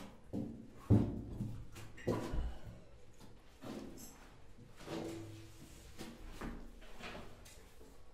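Irregular knocks and bumps, about eight in all, each with a short ringing tail, echoing inside a steel submarine compartment. The loudest comes about a second in.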